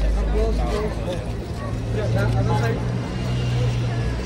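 People talking over a steady low engine drone from a nearby vehicle.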